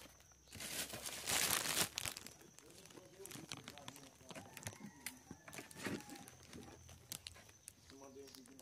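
A loud burst of rustling and crinkling about half a second in, lasting just over a second, then softer rustles and scattered clicks: close handling noise as things are moved around at the car.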